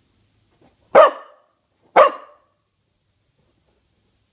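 A corgi barking twice, two sharp, loud barks about a second apart.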